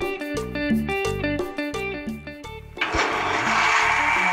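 Background guitar music, then about three seconds in an electric countertop blender starts up and runs with a steady whir and a faint high whine, puréeing hot butternut squash soup.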